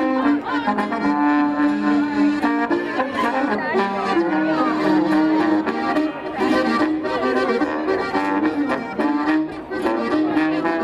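Live folk band of two accordions, an acoustic guitar and a trombone playing a lively tune, the accordions' held chords carrying it.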